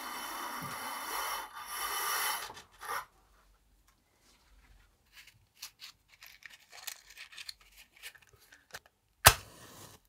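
A fabric curtain is drawn across a window with a rustling, rattling noise for about three seconds. Then come small clicks of a matchbox being handled, and about nine seconds in a match is struck with one sharp scrape and a short hiss as it flares.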